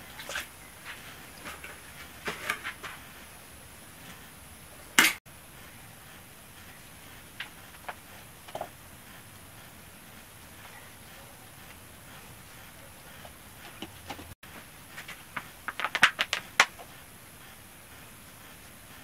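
Scattered crinkles and clicks of plastic being handled while tomato seedlings are planted, with one sharp click about five seconds in and a quick run of crackles near the end.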